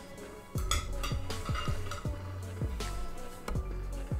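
Metal cutlery clinking and scraping on a ceramic plate, a cluster of clinks about a second in, over background music with a steady beat.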